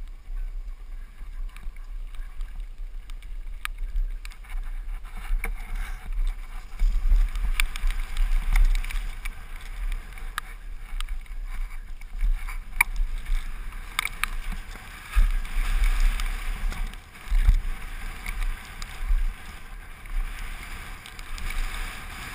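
Mountain bike descending a downhill trail, heard from a helmet-mounted camera: wind buffeting the microphone in surging low rumbles over steady tyre and trail noise, with scattered sharp clicks and rattles from the bike.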